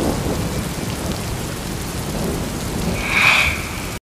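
Rain-and-thunder ambience track: steady rain with low rumbling thunder. A brief, higher-pitched sound rises over it about three seconds in.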